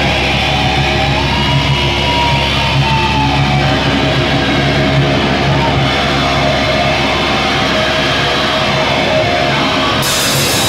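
Loud live heavy rock from a band: distorted electric guitars and bass holding long, sustained notes.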